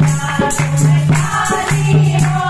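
A group of women singing a devotional Hindu bhajan together, with a steady beat of hand claps and dholak drum strokes.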